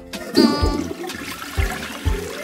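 Cartoon sound effect of a toilet flushing: a rush of water that starts about half a second in, over light background music.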